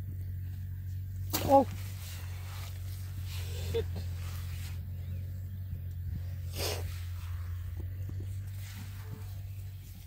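A man's startled exclamations, a loud "oh" and then "shit", over a steady low hum, with a brief noise about six and a half seconds in.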